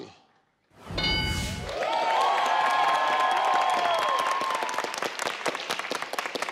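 Game-show answer-board chime with a low thud about a second in, then the studio audience applauding over a short held musical chord that fades near the end.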